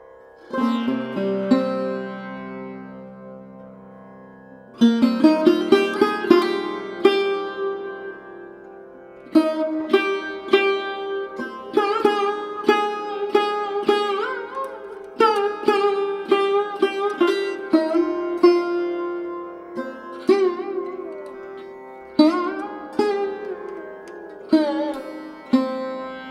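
Instrumental background music in Indian classical style: a plucked string instrument playing runs of notes, some bent in pitch, over a steady drone.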